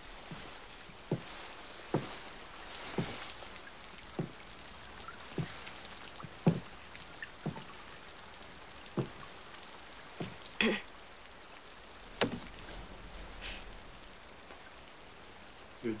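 Slow, uneven taps about once a second over quiet room tone, with a brief rustle about ten and a half seconds in.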